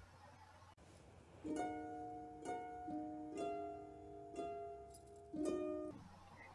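Quiet background music: a slow melody of single plucked-string notes, each ringing on until the next, starting about one and a half seconds in after near silence.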